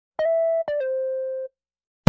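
Two synthesized electronic tones: a short higher note, then a longer, lower note that steps down in pitch and fades out, each starting with a click.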